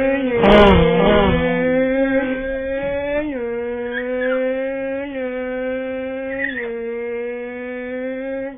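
A voice holding one long wailing note, its pitch dipping slightly three times before it cuts off just after the end.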